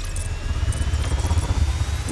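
Logo-sting sound effect: a deep, steady rumble with a thin high tone rising slowly in pitch, building up toward an impact hit right at the end.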